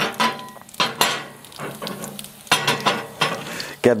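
Cast iron waffle iron clanking against the grill grate as it is handled, several sharp metal knocks, one with a brief ring, over a steady sizzle of food cooking on the hot grill.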